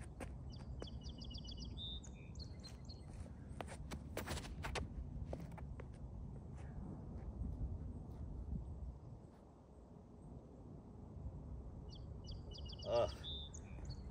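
Wind buffeting the microphone as a steady low rumble, with a small bird's rapid trilled chirps near the start and again near the end, and a few sharp clicks in the middle.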